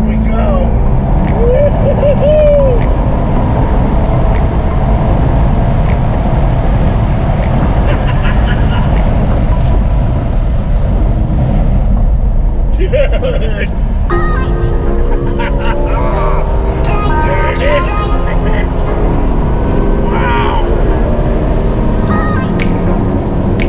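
Sports car at track speed heard from inside the cabin: loud, steady engine and road noise, with voices talking over it.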